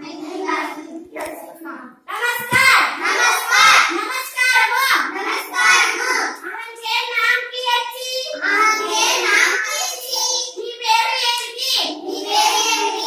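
A group of children's voices reciting aloud together in a sing-song chant, with a short break about two seconds in.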